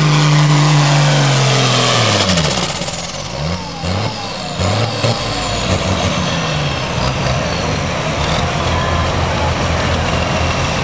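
John Deere pulling tractor's engine at full power under load, then dropping in pitch about two seconds in as the pull ends. A few short revs follow before it settles to a lower, steady running, with a high whine winding down slowly.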